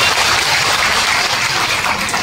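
Audience applauding, a dense, steady clatter of many hands clapping.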